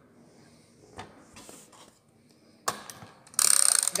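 Air rifle's action being opened for loading: a few light clicks, a sharp click a little before three seconds in, then a loud ratcheting rasp over the last half-second as the mechanism is worked.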